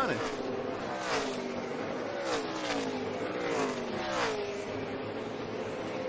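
NASCAR Cup Series stock car V8 engines running at speed past the track microphones. Several passes are heard, each a falling engine pitch.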